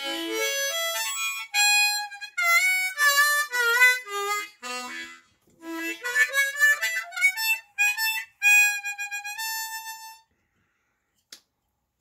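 A brand-new Hohner Special 20 ten-hole diatonic harmonica played in a gentle warm-up run of notes, a few of them sliding in pitch, stopping about two seconds before the end: a first easy play to loosen up the new reeds.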